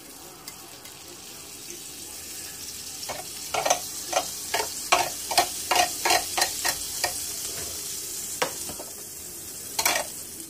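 Cuban sandwich sizzling in a closed electric contact grill: a steady hiss that slowly grows louder, with a run of sharp clicks, about two or three a second, through the middle and a louder one near the end.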